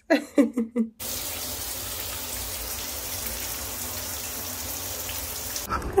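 A short laugh, then a steady, even rushing noise that starts abruptly about a second in and cuts off abruptly just before the end.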